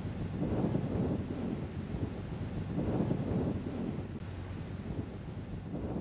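Rough sea surf with waves breaking, heard through wind buffeting the microphone; the noise swells twice, about a second in and again about three seconds in.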